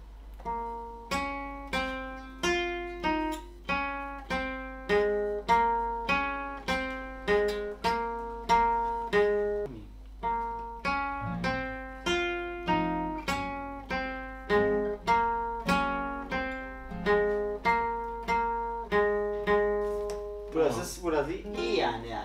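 Acoustic guitar picking a slow single-note melody, the intro of a song played from tab, one plucked note at a time at about two notes a second, each note ringing and fading.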